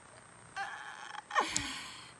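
A woman laughing: a high, breathy laugh, then a sharp cry about a second and a half in that slides down in pitch.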